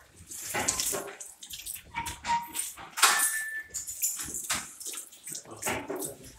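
Faucet water running over hands and splashing into a sink basin, coming in irregular gushes as the hands move through the stream, with a couple of brief high tones near the middle.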